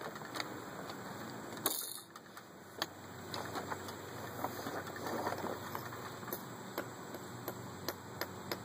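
Scattered light clicks and taps at uneven intervals, with a brief rustle of hiss about two seconds in.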